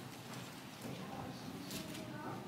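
Quiet room noise of a gathered congregation: a few faint, scattered taps and clicks with a faint murmur of voices.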